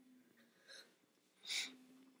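One short, sharp breath about one and a half seconds in, with a fainter one just before it, over quiet room tone with a faint steady hum.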